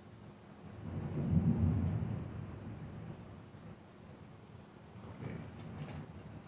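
A low rumble that swells about a second in and fades away over the next two seconds, with a few faint clicks near the end.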